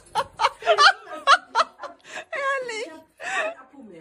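A person laughing in a run of short, high giggles that trail off near the end.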